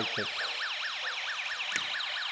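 Electronic siren warbling rapidly, about five up-and-down sweeps a second, from a Snap Circuits alarm circuit's speaker, with a brief click near the end.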